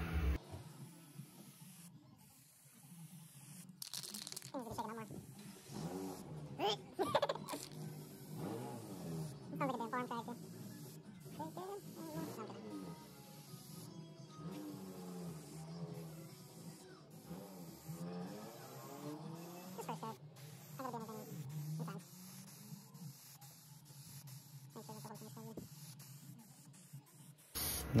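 Quiet background music with a voice in it and a steady low note held underneath.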